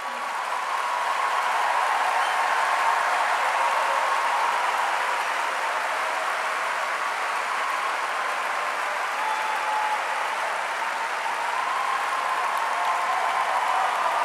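Large audience applauding, building over the first two seconds and then holding steady.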